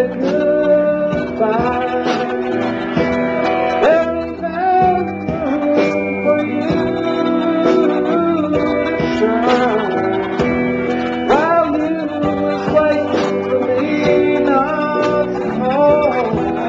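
A rock band playing live: electric guitars with a man singing.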